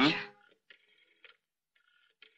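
A short 'mm?' from a voice, then a telephone ringing faintly in two short stretches, the second longer than the first.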